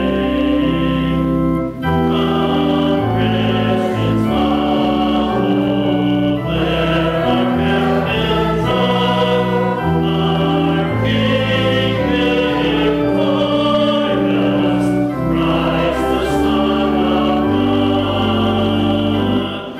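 Congregation singing a hymn with pipe-organ-style accompaniment, with held chords under the voices and a brief break between phrases about two seconds in.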